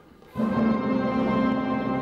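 Opera orchestra coming in suddenly about a third of a second in with a loud chord, held steadily.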